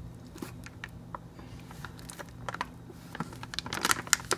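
Faint crinkling of a mylar foil bag handled at its top while it is heat-sealed shut with a hair flat iron: scattered small crackles that grow busier near the end.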